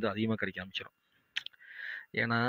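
A man talking until about halfway through, then a brief pause broken by a single sharp click, followed by a soft hiss.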